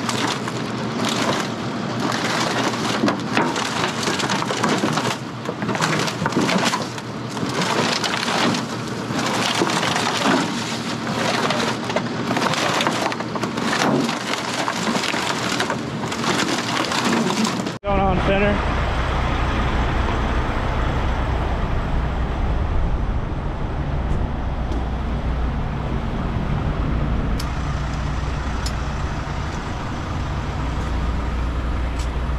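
The torn walls and cargo of a wrecked semi trailer crunch and crack irregularly as rotators drag it. About eighteen seconds in, this gives way abruptly to the steady low drone of a heavy rotator tow truck's diesel engine running.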